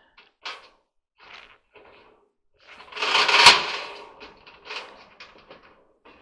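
Coiled wire of a clothes dryer heating element clinking and scraping against its sheet-metal housing as it is stretched onto ceramic keepers. A few light scrapes, then a louder rattle with a sharp click about three and a half seconds in, followed by a run of small ticks.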